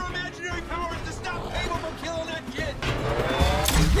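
Movie soundtrack: voices and music, then about three seconds in a vehicle engine revving up, with a heavy low rumble.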